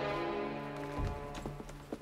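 Sustained film-score chords that stop with a low thud about a second in, followed by a string of hard-soled footsteps clicking on a hard floor.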